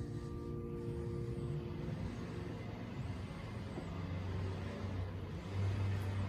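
The last held chord of oboe and piano dies away in the first two seconds, leaving a low engine rumble of a passing motor vehicle that swells near the end.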